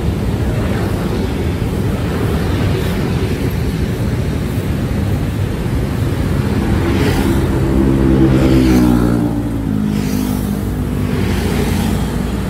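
Road traffic: steady engine and tyre rumble, with one engine note growing louder and rising then falling in pitch between about seven and ten seconds in.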